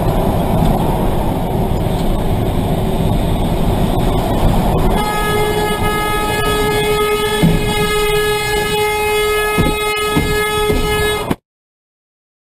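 Road and engine noise inside a moving car, then about five seconds in a long, steady vehicle horn blast that holds for about six seconds and cuts off abruptly.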